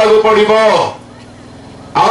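A man's voice preaching into a handheld microphone, a drawn-out phrase that stops about a second in, followed by a brief pause.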